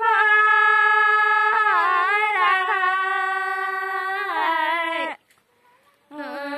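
A woman singing in the Nepali thadi bhaka folk style: a long, high, held note with slow bends in pitch, which breaks off abruptly about five seconds in.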